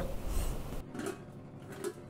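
Quiet kitchen sounds with a faint metallic scrape just before the end as a stainless steel plate used as a lid is lifted off a pot of boiling biryani masala.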